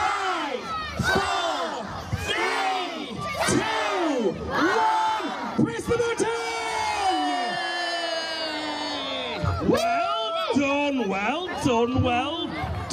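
A large crowd shouting a countdown together, about one number a second, breaking into a long drawn-out cheer that falls in pitch about five seconds in, followed by more shouting.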